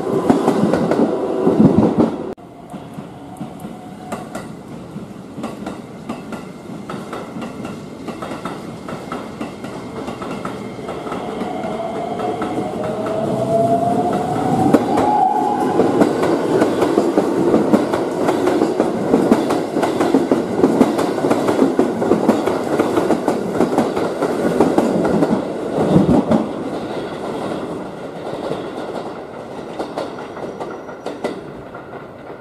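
Keikyu electric trains running past at a station, with wheels clicking over the rail joints. A motor whine rises in pitch from about ten to fifteen seconds in as a train gathers speed. The sound drops abruptly about two seconds in and is loudest in the second half.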